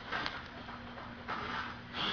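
Handling noise as a camera is moved and set in place: a light knock near the start, then a short rushing sound over a faint steady hum.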